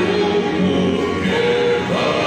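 A group of men singing a Tongan hiva kakala song in harmony, with long held notes, accompanied by strummed acoustic guitars.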